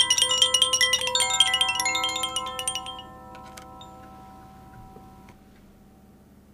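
Altar bells rung at the elevation of the consecrated host: a rapid jangle of several small bells for about three seconds, then their ringing fades away.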